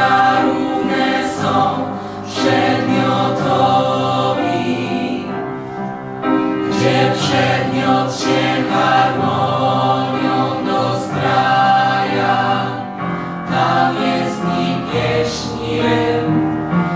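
A vocal ensemble of young voices singing a song together into microphones, choir-like and continuous.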